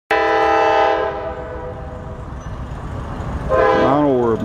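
GE Dash 9-40CW diesel locomotive's air horn, sounding a chord for the road crossing: one blast of about a second at the start, then a second blast beginning near the end with its pitch bending.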